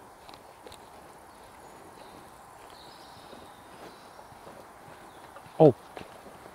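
Quiet outdoor background hiss with a faint high drawn-out tone about halfway through, then a man's short loud "Oh!" near the end, his reaction to the heat of a super-hot chili pepper touching his lips before he has bitten down.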